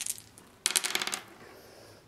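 Several six-sided dice rolled onto a tabletop wargaming board, a quick clatter of clicks lasting about half a second, a little under a second in.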